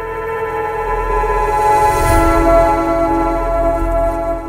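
Logo sting of the outro: a sustained electronic chord of many held tones over a low rumble, swelling to its loudest about two seconds in with a brief whoosh.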